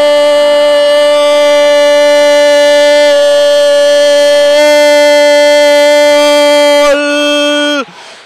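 A football commentator's long, drawn-out goal shout: one loud held note lasting about eight seconds that drops in pitch and cuts off just before the end.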